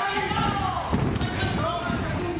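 Indistinct voices under the bout, with a dull thud about a second in.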